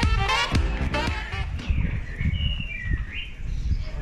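Background music that stops about a second and a half in, followed by birds chirping in short rising and falling calls over a low outdoor rumble.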